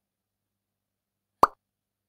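A single short pop-like sound effect, about one and a half seconds in.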